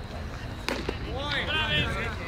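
A sharp pop about two-thirds of a second in as a baseball pitch smacks into the catcher's mitt, followed by high voices calling out from the field.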